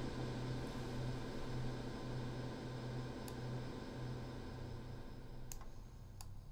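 Airwindows Galactic2 digital reverb holding a dense, steady wash of sound with a low drone under it, fading slowly as its Sustain is pulled back from endless feedback. A couple of mouse clicks sound near the end.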